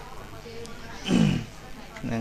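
A person's voice making one short, drawn-out vocal sound about a second in, its pitch falling steadily, with low background hiss around it.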